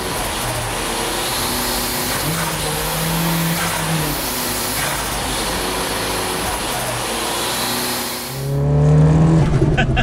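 Nissan Pulsar GTiR's turbocharged SR20DET four-cylinder running hard on a chassis dyno, a steady engine note under a wide hiss. About eight and a half seconds in it gives way to the engine heard from inside the cabin while driving, deeper and louder.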